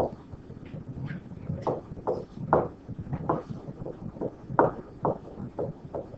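Pen stylus tapping and stroking on a writing tablet during handwriting: an irregular series of short clicks and knocks.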